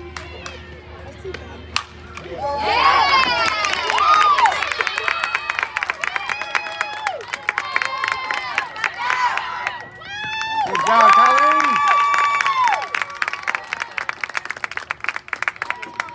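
Softball crowd cheering and shouting, with clapping, breaking out about two and a half seconds in just after a single sharp knock of a bat meeting the ball. The cheering eases off, then a second loud burst of shouts comes about eleven seconds in, with clapping going on throughout.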